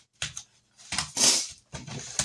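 Small handling noises at a desk as paper items held with a paper clip are put into a book: a couple of light clicks and taps, and a short rustle about a second in.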